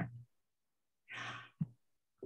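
A woman's short breathy exhale, like a sigh or a breath of laughter, about a second in, followed by a brief soft tap.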